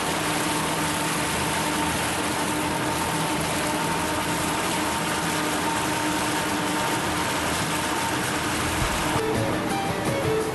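Twin Yamaha V8 four-stroke outboard motors running steadily under way, a constant drone over the rush of the propeller wash. Music comes in near the end.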